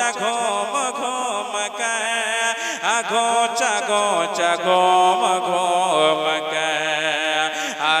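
A man singing a naat, an Islamic devotional song, into a microphone, drawing out long ornamented notes with a wavering pitch.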